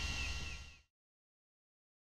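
Faint outdoor background noise with a few faint, falling high chirps, cutting off to complete silence under a second in.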